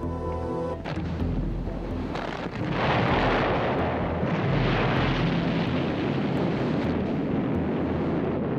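Documentary music, then about three seconds in a dynamite blast goes off and its dense noise carries on for several seconds over the music.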